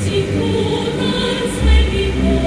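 Choral music, several voices holding long sustained notes together, with a low rumble swelling up near the end.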